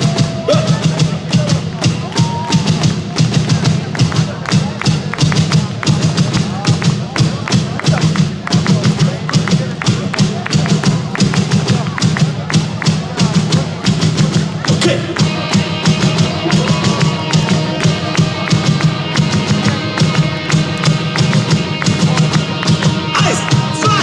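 Rock band playing live through a festival PA: a loud, fast, even beat, joined about fifteen seconds in by held melodic tones.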